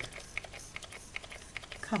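Light clicking of a small Perfect Pearls mist spray bottle's pump, pressed again and again in quick succession, about five clicks a second, with no spray coming out: the pump is not delivering.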